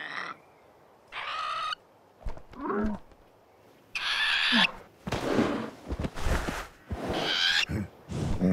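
Cartoon animal character voices: a string of short vocal calls and grunts, several falling in pitch, with brief quiet gaps between them.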